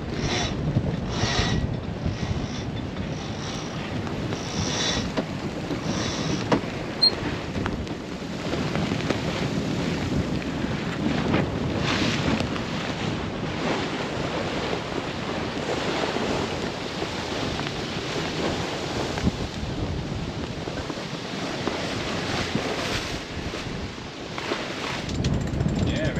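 Wind buffeting the microphone over the rush of sea water along a sailing yacht's hull while it sails under its genoa. A string of short bursts of noise comes in the first few seconds.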